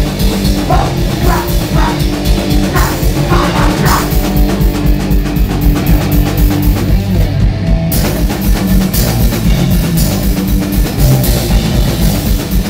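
Rock band playing live: bass guitar and guitar over a drum kit with cymbals, no singing. The cymbals drop out for about half a second past the middle, then come back in.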